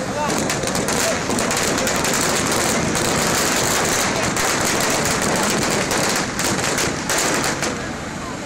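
Ground fireworks going off in a fast, continuous crackle of many small bangs, like rapid gunfire, loud and steady without a break.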